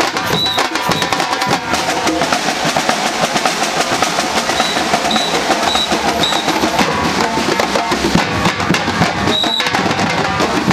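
Street percussion band drumming a dense, steady rhythm, with a short shrill tone sounding a few times over the drums.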